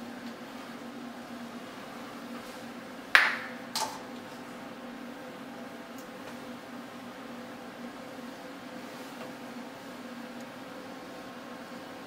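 Two short clicks from a hand caulk gun being worked while running a bead of silicone caulk, the first about three seconds in and louder, the second fainter just after, over a steady low hum.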